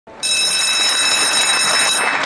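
Electric bell ringing continuously, several high steady tones over a rattling haze, stopping abruptly at the end; a school bell for the start of assembly.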